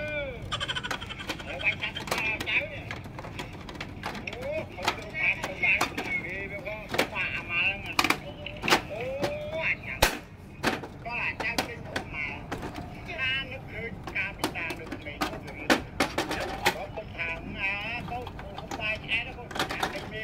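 Scattered sharp plastic clicks and knocks as a laser printer's casing panels are handled and unclipped during disassembly.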